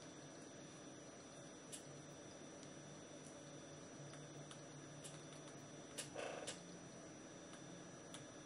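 Near silence: room tone with a faint steady low hum. A few small clicks and a brief rustle about six seconds in come from a mobile phone and its charging cable being handled.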